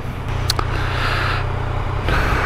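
Yamaha XSR900's inline three-cylinder engine idling steadily with the bike stopped. A rushing noise rises and fades in the middle.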